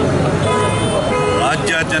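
A man speaking, over a steady low rumble of road traffic.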